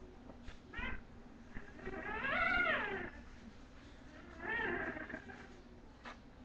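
Young bulldog puppies crying in high, meow-like whines: a short cry, then a long louder cry that rises and falls in pitch, then a third, shorter one.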